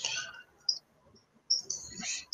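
High-pitched chirping in short bursts, a brief one at the start and another just after half a second, then a longer run in the last half second.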